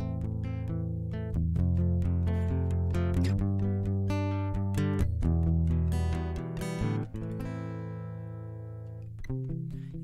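Acoustic guitar playing an instrumental passage of plucked notes and chords. About seven seconds in, a chord is left to ring and fade, and the playing picks up again near the end.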